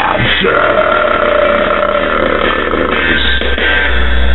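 A singer's voice holds one long note, rough and burp-like, from about half a second in until near the end, over a surf-rock backing track.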